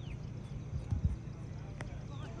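Open-air football pitch ambience: a steady low rumble with a few dull thumps about a second in and a sharp click near the end, under faint, distant shouts from players.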